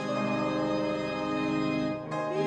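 Church organ playing a hymn, holding one sustained chord.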